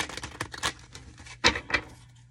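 Tarot cards being handled and shuffled: a quick run of crisp card flicks and rustles, the loudest about one and a half seconds in.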